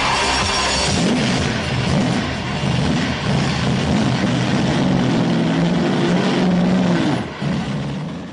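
Weineck Cobra replica's large-displacement V8 revving repeatedly at standstill, its pitch rising and falling. It falls away near the end.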